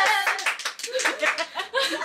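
A small group clapping irregularly just as a held sung note of a birthday song stops, with voices and a little laughter in among the claps.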